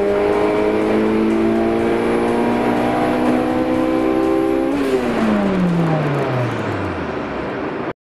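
Car engine heard from inside the cabin, pulling hard under full throttle in fourth gear, its note climbing slowly as the revs build. About five seconds in the throttle is lifted and the revs fall away steadily.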